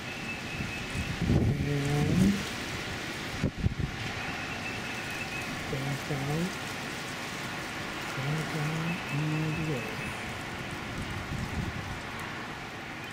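Outdoor background noise with a steady hiss, broken by a few short, low, wordless voice sounds like humming or a drawn-out "uhh". There is a single sharp click about three and a half seconds in.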